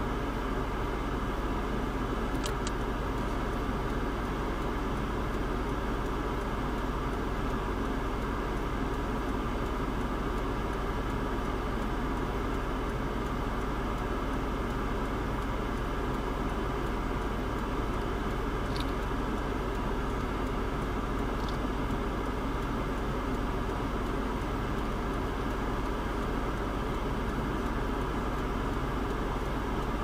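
Steady hum of a car standing still with its engine idling, heard from inside the cabin, with a few faint, short high chirps.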